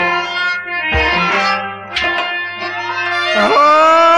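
Kashmiri Sufi folk music: rabab phrases with sharp plucked attacks about once a second over deep drum strokes. About three and a half seconds in, a male voice comes in on a long held note.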